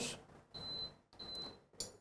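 Induction hob's touch controls beeping as it is switched on: two short, high, steady beeps about two-thirds of a second apart.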